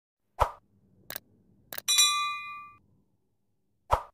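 Sound effects of a subscribe-button animation: a pop, two short clicks, then a ding that rings for just under a second, and another pop near the end.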